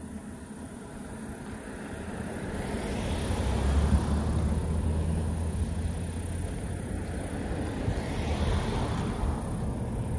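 A road vehicle driving past, growing louder over the first few seconds, with a low steady engine hum and tyre noise.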